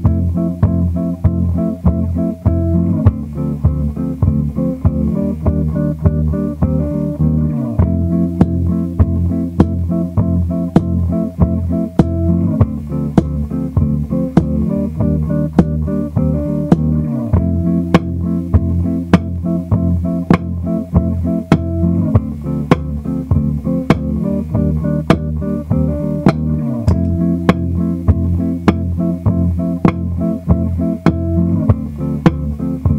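Precision-style electric bass played fingerstyle in a looped arrangement. Layered sustained bass notes and chords change about every five seconds over a steady beat of sharp percussive clicks.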